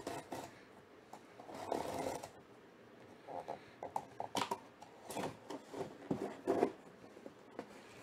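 Cardboard rubbing and scraping as fingers work open the lid of a long cardboard bat box, in irregular short bursts: one longer rasp about two seconds in, then a run of short, sharper scrapes.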